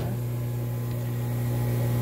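Aquarium pump humming steadily, a low even mains-frequency drone with a higher overtone.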